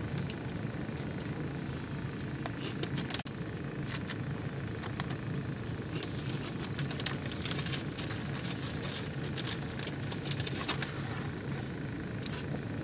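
A steady low mechanical hum throughout, with scattered sharp clicks and crackles of eating from a takeout food container.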